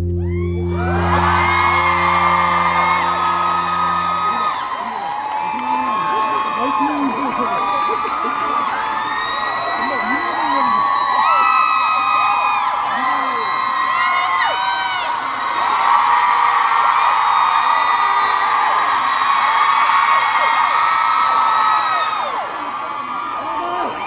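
Concert crowd cheering, with many high screams and whoops. A held low note from the backing track sounds under it for the first four seconds or so, then stops.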